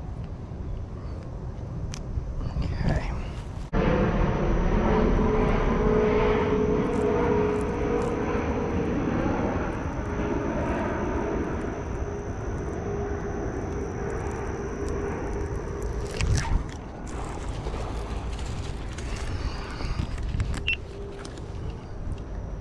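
A steady engine drone, with a single held note that sags slightly in pitch. It starts abruptly about four seconds in and stops about sixteen seconds in.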